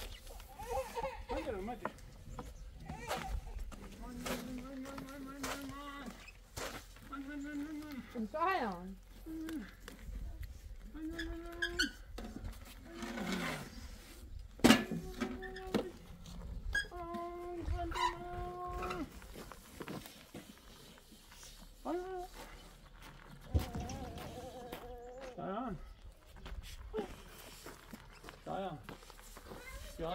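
People's voices talking and calling out, some sounds drawn out on a held pitch, with scattered sharp knocks; the loudest knock comes about halfway through.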